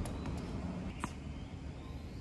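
A tennis ball bounced on a hard court before a serve: a faint knock at the start and a clearer short knock about a second in, over steady low outdoor background noise.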